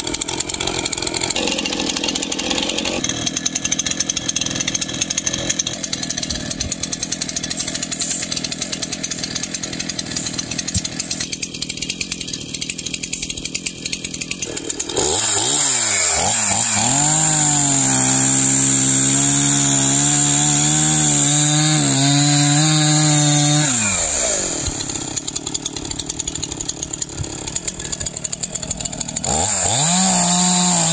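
Stihl MS311 59cc two-stroke chainsaw running at idle for about the first half. About halfway through it is throttled up and cuts into a log with its carbide-tipped chain, the engine pitch dipping and holding under load for several seconds before dropping back to idle. It throttles up again near the end.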